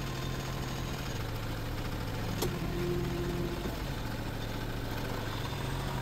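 Kubota compact tractor's diesel engine idling steadily. About halfway through there is a click, then a higher steady whine for about a second.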